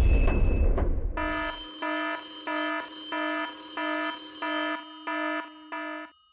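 Game-show sound effects: a deep whoosh and rumble, the loudest part, then from about a second in an electronic alarm-like ringing that pulses about twice a second, the alert that a team has called its help option.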